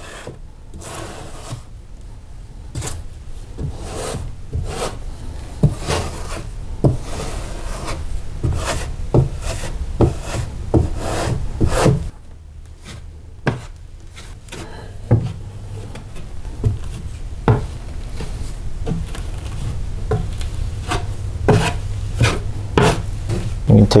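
Steel drywall taping knife scraping joint compound across a paper-faced drywall patch, in repeated uneven strokes with short sharp scrapes and ticks as the blade meets the wall.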